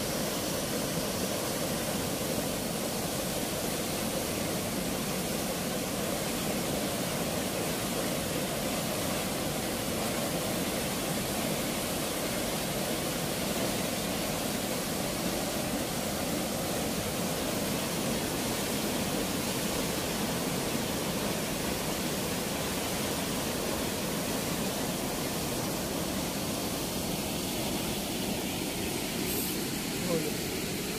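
Steady rushing of water pouring through the sluice gate of a weir, an even noise with no change throughout.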